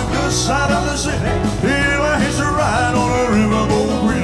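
Live rock-and-roll band playing an up-tempo number, with drums, bass and electric guitar.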